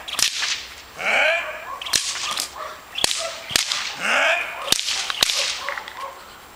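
A decoy's whip cracks sharply about six times, irregularly, to agitate the dog. A young Belgian Malinois gives a few loud barks between the cracks.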